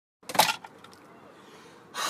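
A flipped bottle landing and settling upright: a quick clatter of a few knocks about a third of a second in, followed by a couple of faint taps.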